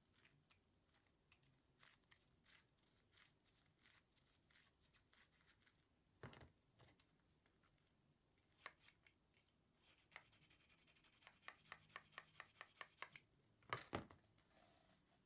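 Faint scraping and clicking of a hand chamfer tool being turned in the mouths of brass rifle cases, with a knock about six seconds in. Near the end comes a quick run of small clicks, about five a second, then a sharper click.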